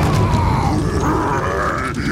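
A cartoon character's deep, gruff grunting vocalisation, loud throughout, with music underneath.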